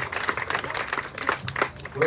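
Scattered applause from a small crowd: sparse, irregular handclaps.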